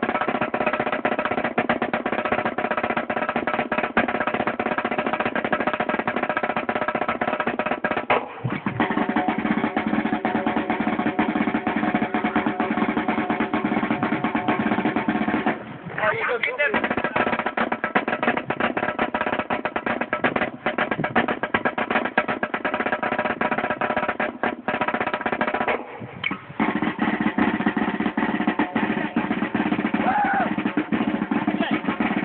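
Marching snare drum played fast and without let-up: dense rolls and rudiment patterns, broken by a few short pauses.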